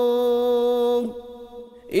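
Unaccompanied male voice holding one steady, unwavering note in an Islamic ibtihal chant. The note stops about halfway through and fades to a faint trace, and the next sung phrase begins right at the end.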